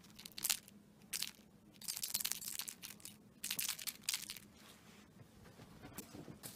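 Crinkling and rustling in short bursts, about five over the first four seconds, then quieter. This is something crinkly being handled or batted about during a cat's play.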